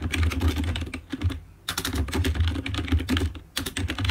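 Fast typing on a computer keyboard: a rapid run of key clicks, pausing briefly twice.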